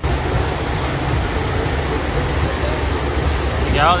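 Steady rush of water pumped in a thin sheet over a FlowRider surf simulator's wave surface, with a heavy low rumble underneath.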